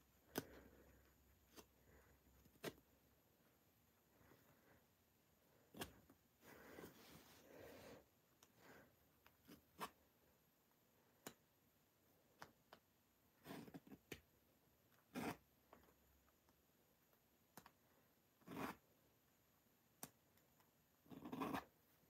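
Faint, scattered snips of a seam ripper cutting the stitches of a jacket sleeve's lining seam, a few seconds apart, with brief rustles of the lining fabric and thread being pulled between them.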